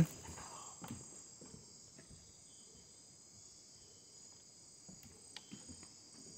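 Faint, steady high-pitched chorus of calling insects such as crickets, with a few faint clicks.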